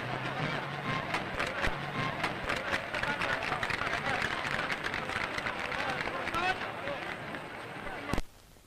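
A large crowd cheering and shouting, many voices at once, on an old newsreel soundtrack with clicks and crackle running through it.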